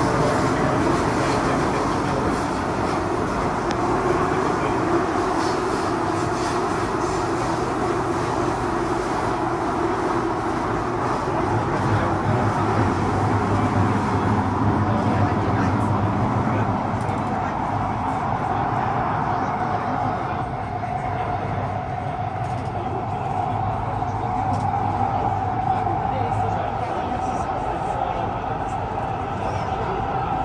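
Interior of an SMRT Kawasaki–Nippon Sharyo C751B metro car running through a tunnel between stations: a steady rumble of wheels and motors with a low hum. A steady whine comes in about two-thirds of the way through.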